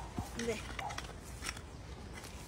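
Hand hoe chopping and scraping through loose garden soil, a few soft strikes as powdered lime is mixed into the bed.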